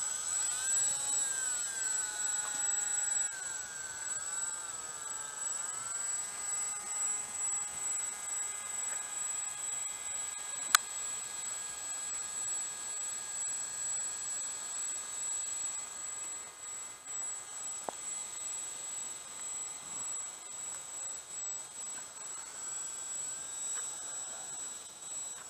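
Three brushless E-flite 10-size electric motors and propellers of a radio-controlled Junkers tri-motor model whining as it taxis, the pitch rising and falling with the throttle for the first few seconds, then holding steady. A single sharp click about eleven seconds in.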